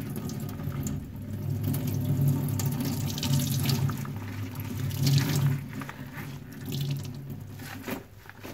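Wet loofah and foam sponges squeezed repeatedly by rubber-gloved hands in a stainless steel sink, water squelching out of them and splashing onto the metal. The sound swells with each squeeze, loudest about five seconds in, and eases off near the end.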